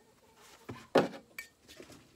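A few light knocks and clinks as a firebrick is handled and set on the metal table of a wet tile saw, the loudest about a second in; the saw is not running.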